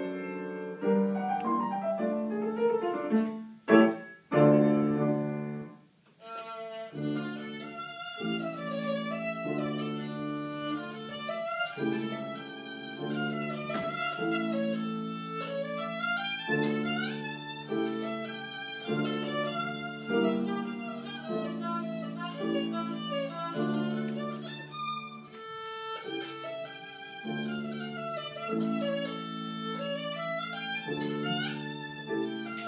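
A violin played by a young student, a bowed melody of sustained notes with a short break about five to six seconds in before the playing resumes.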